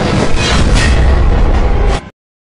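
Loud audio track of a fan-made anime video edit, a dense rumbling mix with a heavy deep low end, cutting off suddenly at the very end.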